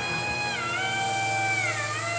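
Background music: sustained held notes that glide down in pitch twice, over a steady low drone.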